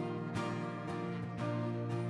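Live worship band music in an instrumental gap between sung lines: sustained keyboard chords with strummed beats about every half second.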